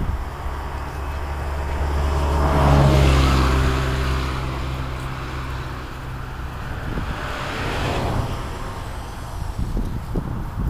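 Cars passing by on the road: the first and loudest swells up and fades about three seconds in, with engine hum under the tyre noise, and a second passes more quietly near the end.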